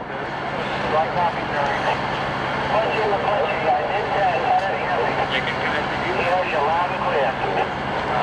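Many voices talking at once, too mixed to make out, over a steady low hum of idling vehicle engines.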